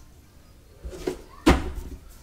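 A softer noisy sound about a second in, then a single sharp knock about a second and a half in that dies away over the next half second.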